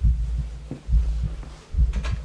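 Deep, low heartbeat-like thumping, about one beat a second: a suspense heartbeat sound effect in a horror skit's soundtrack.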